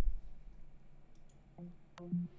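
Computer mouse clicked a few times to start playback. Faint tones of music begin near the end.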